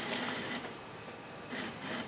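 Bill acceptor's motor drawing a paper banknote into the slot: a short mechanical whir over the first half-second, then a second brief whir about a second and a half in.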